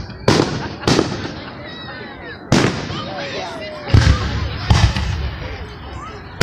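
Aerial firework shells bursting: five sharp bangs spread across the few seconds, each trailing off briefly.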